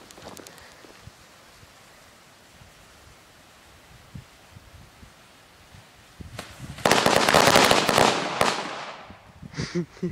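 Half a pack of Black Rooster firecrackers going off: a lull with only a few faint scattered pops for the first six seconds, then a rapid rattle of cracks about seven seconds in that lasts a second and a half before thinning out.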